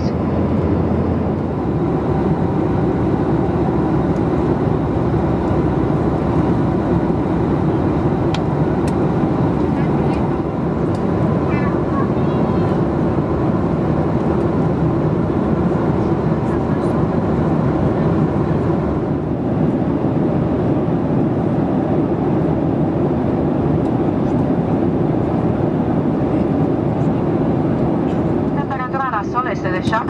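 Steady cabin noise of a Boeing 737-800 in flight: an even, low rumble of engines and airflow around the fuselage.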